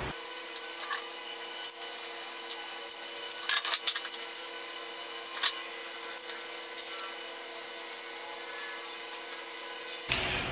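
Aerosol can of clear coat spraying with a steady hiss. A cluster of sharp clicks comes a few seconds in, and one more a little later.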